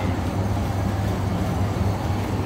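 A steady low machine hum under a constant background noise.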